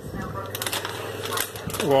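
Whole almonds tipped from a plastic packet into a glass measuring jug, a rapid scatter of small clicks as the nuts tumble in.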